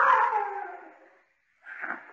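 A cat's long, drawn-out yowl, drifting slightly down in pitch and fading out about a second in.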